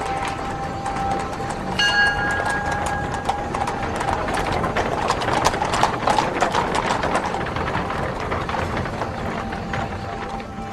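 Horses' hoofbeats clattering, many close-spaced strikes that grow densest about halfway through, with a faint held musical tone underneath.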